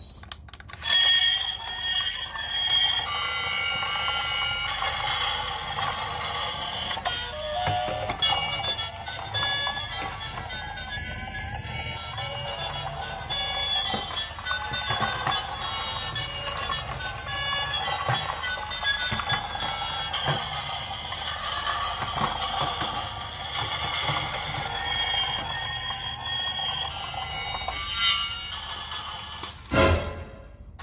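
A tinny electronic melody of short beeping notes, the kind of tune a battery-operated toy train plays, with faint clicking underneath and a couple of louder knocks near the start and near the end.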